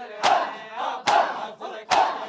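A crowd of men beating their chests in unison (matam): three loud, sharp slaps roughly a second apart, with the crowd's chanting voices between them.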